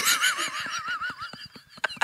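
High-pitched, breathless laughter that warbles up and down in pitch and fades away over about a second and a half, followed by a few short clicks near the end.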